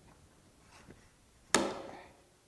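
A snap-blade utility knife forced into a piece of rigid vinyl snap-lock flooring: quiet at first, then one sharp, loud crack about one and a half seconds in that dies away within half a second.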